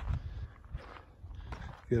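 Footsteps over loose, flat sandstone slabs and rubble, a few irregular hard knocks of stone shifting underfoot.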